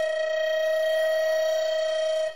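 Recorder holding one long note at a steady, unwavering pitch.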